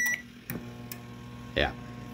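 Microwave oven with its cover off: a short keypad beep, then a click about half a second in as it switches on, and a steady low hum as it runs. It is running through a relay wired in place of its door switches, and the start shows the repair works.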